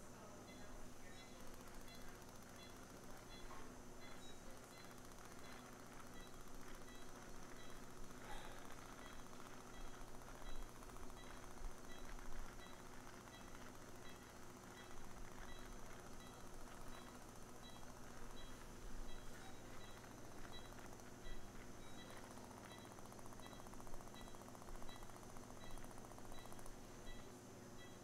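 Quiet operating-room background: a steady equipment hum with a faint high beep repeating at an even pace.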